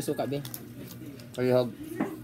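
Speech in a low voice: a few words at the start, then one short drawn-out word about one and a half seconds in.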